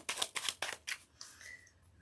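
Tarot cards being handled and snapped against each other: a rapid run of sharp clicks over the first second, then a fainter, softer brushing sound.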